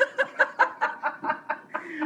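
A woman laughing in a quick, even run of short ha-ha pulses, about five a second.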